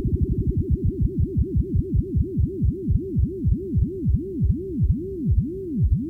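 Electronic music: a synthesizer tone swooping down and up in pitch over and over. The swoops start fast, about five a second, and slow steadily to about one and a half a second by the end.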